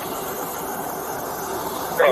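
Steady hiss of road traffic noise, with no clear single vehicle standing out.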